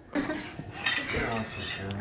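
Springer Spaniel puppy's metal collar tags clinking and tapping against a glass door as he presses and paws at it, a quick run of small sharp clinks.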